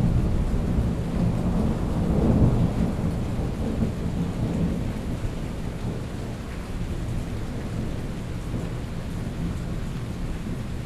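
Rolling thunder with steady rain. The rumble swells about two seconds in, then slowly fades.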